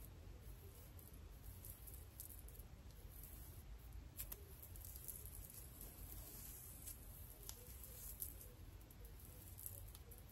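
Faint rustling and soft squishing of hair being twisted by hand, with scattered small crackles over a low steady hum.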